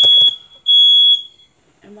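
Electronic alarm beeping with a loud, high, steady tone: two half-second beeps about a second apart, then a pause.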